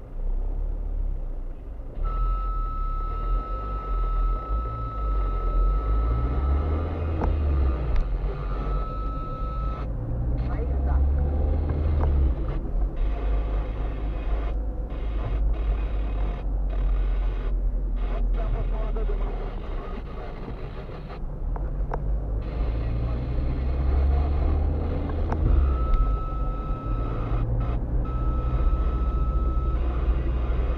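Engine and road noise inside a slowly moving car: a steady low rumble that swells several times. A thin, steady high tone sounds for several seconds near the start and again near the end.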